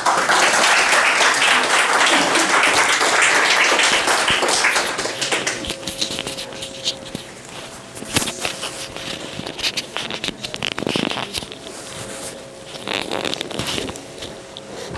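Small audience applauding, a dense clapping for about five seconds that then thins out into scattered claps and small knocks.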